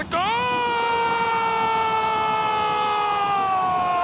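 Football commentator's long goal cry: one shouted vowel held for nearly four seconds, sliding slowly down in pitch until it breaks off.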